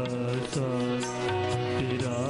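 Live Sufi song: a male voice holds long, bending notes without clear words over instrumental accompaniment, with regular percussion strokes.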